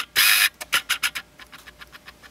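Handling noise: a short rustle right at the start, then a run of small clicks and taps that die away within about a second.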